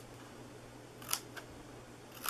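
Two quick snips of small scissors cutting notches into scored cardstock, a quarter second apart about a second in.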